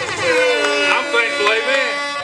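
Instrumental backing track playing, with sustained melodic notes that bend and glide in pitch.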